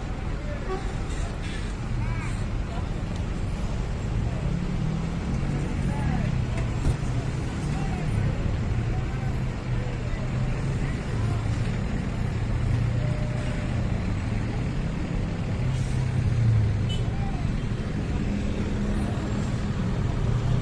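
Bus engines idling close by and roadside traffic running steadily as a low, continuous drone, with faint voices of people in the background.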